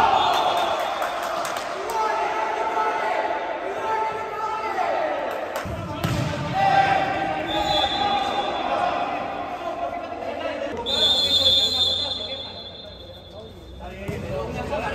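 Futsal being played on a hard indoor court: the ball thuds as it is kicked and bounces, and players and onlookers shout.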